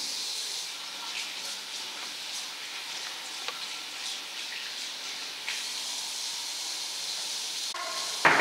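Tap water running into a washbasin while hands are washed under it: a steady hiss that starts at once and cuts off near the end.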